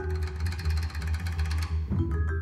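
Jazz trio music with the vibraphone silent: the drum kit plays a fast roll, roughly eighteen strokes a second, over the double bass, and the roll stops shortly before the end.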